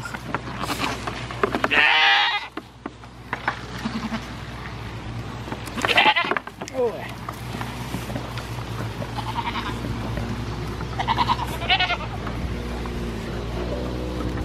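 Goats bleating: a handful of short, quavering calls, one about two seconds in, a loud one around six seconds, and two close together near the end.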